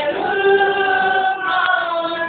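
A choir singing a Māori waiata, holding long sustained notes in several parts, with a change of note about one and a half seconds in.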